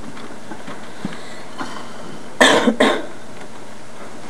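A person coughing twice in quick succession about two and a half seconds in, over a steady background noise.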